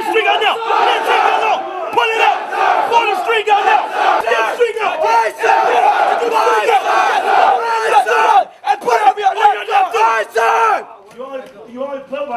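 Drill instructors yelling commands over one another while recruits shout back, a dense din of overlapping male voices. It drops off suddenly near the end, leaving quieter talk.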